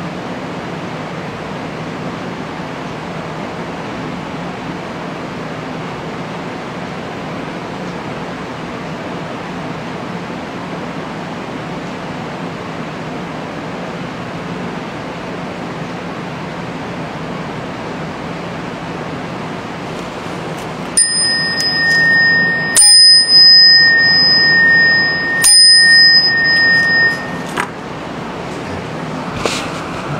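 Steady room hiss, then a small, high-pitched meditation bell struck three times, about two-thirds of the way in, its clear ringing fading out near the end. The bell marks the close of the sitting meditation.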